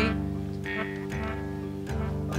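Instrumental folk accompaniment between sung lines: a guitar plucking a few notes over steady held tones.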